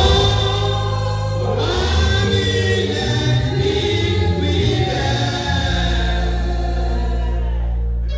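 A gospel hymn sung by a group of voices over a microphone, with a steady low bass accompaniment; the last phrase ends in one long held note.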